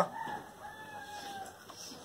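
A rooster crowing faintly: one long call that falls slightly in pitch and tails off about a second and a half in.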